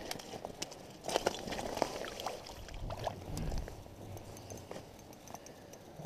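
Irregular knocks, taps and scuffs of movement and handling on snow-covered ice, with a low rumble about three seconds in.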